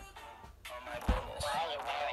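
A single dull thump about a second in, over a voice and background music.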